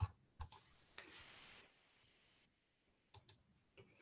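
Sharp clicks of a computer mouse: three in quick succession at the start, then a pause, then a quick pair about three seconds in, as a PowerPoint slideshow is started from the editing view.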